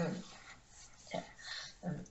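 A woman's speaking voice pausing between phrases: a word trailing off, then a faint breathy hiss and two brief, short voiced sounds.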